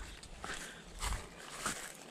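Faint handling noise: soft rustling with a few light knocks, as someone moves about the boat and handles the wiring.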